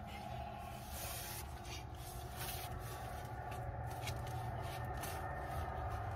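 Shovel blade working into mulched soil, scraping and rustling against buried double-layered landscape fabric that it is not yet tearing through. A steady low hum runs underneath.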